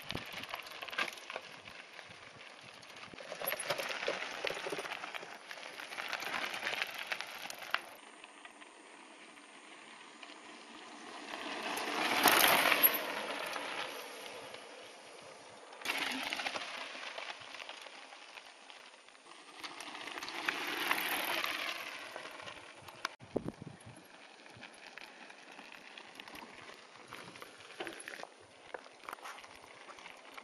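Mountain bikes rolling past on a stony dirt trail, tyres crunching over gravel. The sound comes in several swells that rise and fade as riders pass, the loudest about twelve seconds in.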